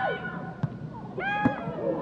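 High-pitched shouts from voices on a soccer pitch during a goalmouth scramble: one call right at the start and a longer one in the second half, with a single sharp thump of the ball between them.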